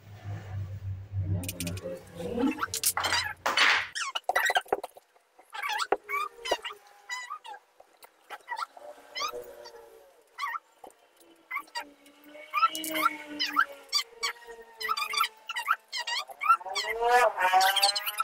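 Dry-erase marker on a whiteboard while words are written: many short, squeaky pitch-bending strokes mixed with light taps and clicks.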